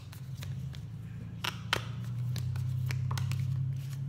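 Tarot cards being shuffled by hand: scattered short flicks and taps of the cards, over a steady low hum that grows louder early on and keeps going.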